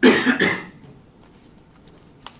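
A person coughing: a quick run of two or three coughs that is over in under a second.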